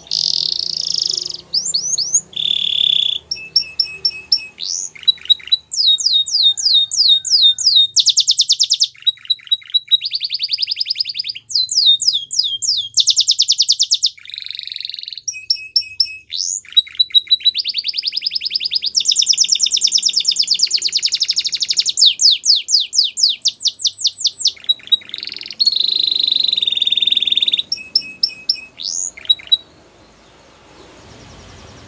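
Canary singing a long, unbroken song of rapid repeated notes and trills. The phrase changes every second or two, with some notes sweeping up or down in pitch.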